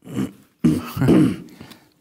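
A man clearing his throat in two goes: a short rasp, then a longer rough one.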